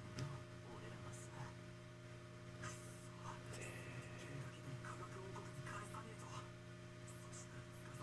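Faint room tone: a steady low hum with scattered soft rustles and faint bits of voice.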